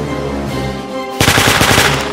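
Background music with held tones, then, a little past halfway, a short, loud burst of rapid automatic-rifle fire lasting under a second.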